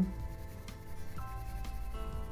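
Soft 4B graphite drawing pencil scratching on paper in shading strokes, under background music of held notes that change about a second in.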